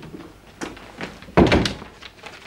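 A wooden door being shut, closing with one loud knock about one and a half seconds in.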